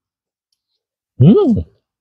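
A man's appreciative "mmm" while chewing food, a single hum whose pitch rises and then falls, about a second in, after a second of dead silence.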